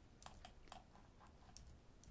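Near silence: room tone with a few faint, scattered clicks of a computer keyboard.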